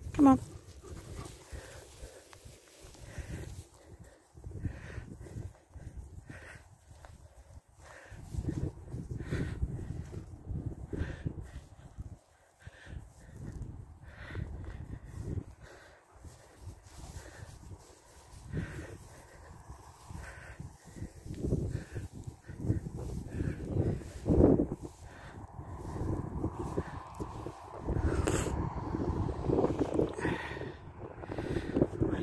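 A German Shepherd dog panting close by, in short repeated breaths, with wind rumbling on the microphone now and then.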